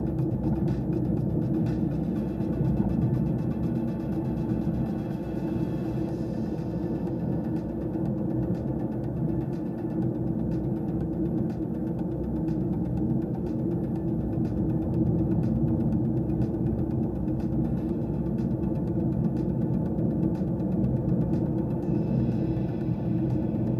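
Steady low rumble of a car driving, heard from inside the cabin: engine and tyre noise on a rough mountain road, with faint light ticks throughout.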